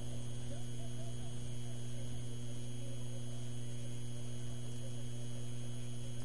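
Steady low electrical hum with fainter higher buzzing tones, unchanging throughout.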